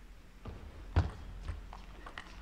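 Table tennis ball clicks: four sharp knocks about half a second apart, the loudest about a second in, as the ball strikes table and paddles.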